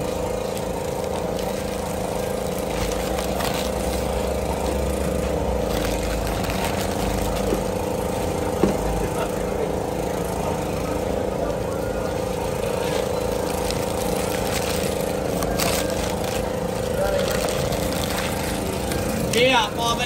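A motor running steadily: a constant hum with a pitched drone.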